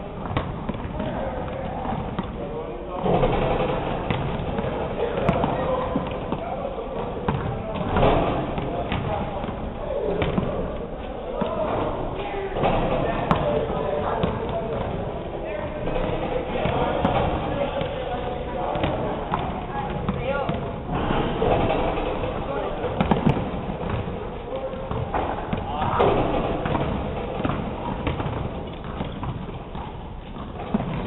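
A basketball bouncing on a gym court floor with repeated short thuds and occasional louder bangs, as shots are taken and rebounded, ringing in a large indoor gym hall. Indistinct voices carry underneath.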